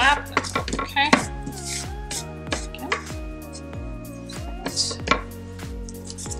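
Fingers pressing and patting paper down onto a wooden box lid, giving a run of light taps and clicks, over background music with held notes.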